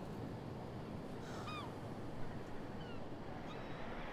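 Steady wash of ocean surf and wind, with a few faint bird calls about a second and a half in and again around three seconds.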